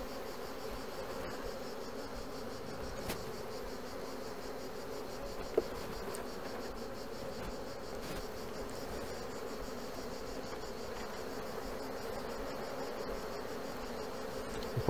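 Steady hum of many honeybees buzzing around an open hive, with one brief louder blip a little before halfway.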